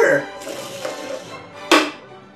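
A man's voice over background music, with one sharp, short knock near the end.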